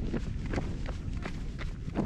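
Running footsteps on a paved road, about three strides a second, over a low rumble of wind on the microphone.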